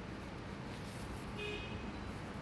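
Steady street traffic noise, with a short car-horn toot about one and a half seconds in.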